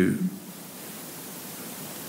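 A man's voice ends a sentence in the first moment, then steady faint hiss: room tone and recording noise in a pause of speech.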